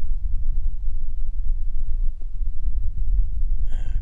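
Wind buffeting the microphone: a low, fluctuating rumble.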